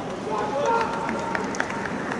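Footballers calling out to each other across the pitch, with two sharp knocks close together about a second and a half in.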